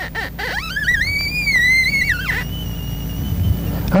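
Handheld scintillometer's audio signal: a tone that rises steeply in pitch about half a second in, wavers high for over a second, then drops away just past two seconds, followed by a fainter steady high tone. The rising pitch marks the count rate climbing as the probe passes over rich uranium ore.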